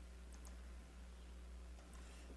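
A few faint clicks of laptop keys over a low steady hum, as slides are being loaded on a laptop.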